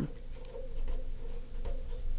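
Felt-tip marker writing a word on paper: soft scratching strokes of the tip with a few faint, irregular clicks.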